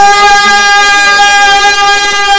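A single man's voice holding one long, steady, drawn-out note, the kind of prolonged call used in majlis chanting, picked up loud on the microphone.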